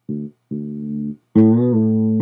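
Sampled fretless electric bass from Logic's EXS24 sampler playing single sustained notes: a short one, a longer one, then a louder, brighter note about a second and a half in.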